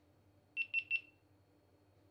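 GoPro MAX camera beeping: three quick, high-pitched electronic beeps about half a second in.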